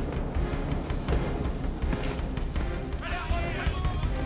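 Dramatic film score playing over a deep, steady low rumble, with a brief sliding voice-like sound about three seconds in.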